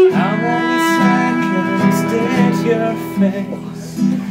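Live acoustic band playing an instrumental passage: strummed acoustic guitar over a held cello note and bass guitar.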